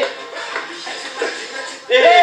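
Background music with faint voices, at a lower level than the shouting just before and after.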